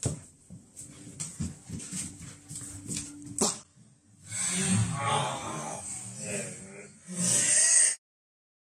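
Light footsteps and small knocks on a wooden floor while a dog whimpers, ending in a sharp knock about three and a half seconds in. Louder voices take over from about four seconds in.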